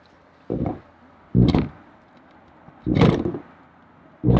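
Power saw cutting into the coop's wooden siding in three short bursts of the trigger: the blade is tilted to start a plunge cut along the marked line.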